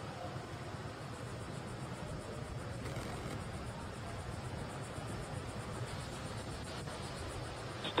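Steady ambient hiss with a low hum. From about three seconds in, a faint, rapid, high-pitched chirring joins it.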